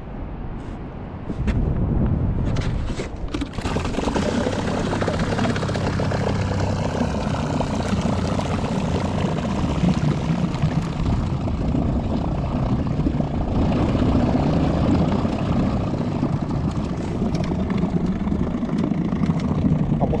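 Bow-mounted Minn Kota electric trolling motor running steadily and moving the boat through the water. It comes up to speed about a second and a half in, with a few knocks against the boat just after.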